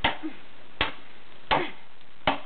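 A long-handled tool chopping into frozen ice on the ground, three sharp strikes about three quarters of a second apart, breaking up ice-bound frozen droppings.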